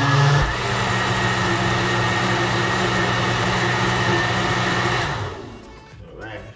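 White countertop blender motor whipping a pale liquid mixture: it runs steadily for about five seconds, then winds down and stops.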